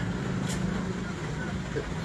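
Steady low hum of an idling engine close by, with a faint click about half a second in.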